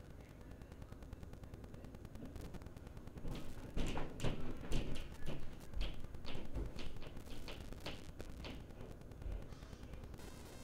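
Irregular clicks and knocks with several deep thumps, loudest between about four and seven seconds in, from objects being moved and handled in a room.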